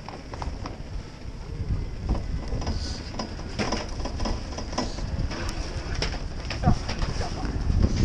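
Wind buffeting an action camera's microphone on an open chairlift in a snowstorm, a steady low rumble, with scattered knocks and clicks.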